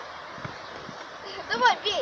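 Faint outdoor background noise, then one short voiced call about a second and a half in.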